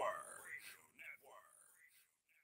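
A faint voice trailing off and fading away over about the first second and a half, then silence.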